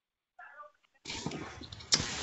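A microphone on a video call opens about halfway through, bringing in a steady hiss of background noise and a click just before speech, after a short faint wavering sound.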